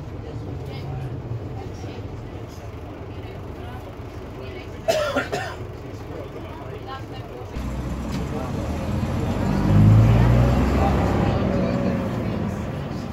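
Gardner six-cylinder diesel engine of a Bristol RELL6G bus heard from inside the saloon while underway, a steady low rumble that grows louder from about eight seconds in as the engine pulls harder. A brief sharp sound cuts in about five seconds in.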